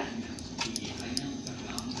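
A spoon stirring flour and curd in a steel bowl, a soft scraping with a few faint clicks of the spoon against the metal.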